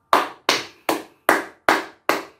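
A person clapping hands slowly and evenly, five claps about two and a half a second.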